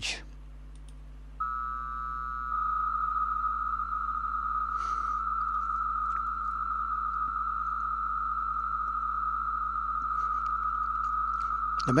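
RAYNET Messenger digital data signal going out in GMSK-250 mode as a formal message is sent. About a second and a half in, a few steady tones start together. About a second later they give way to a continuous data tone at one steady pitch.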